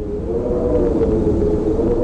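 Rumbling, droning game sound effect: a low rumble under several wavering held tones, swelling a little louder in the first half second and then holding steady.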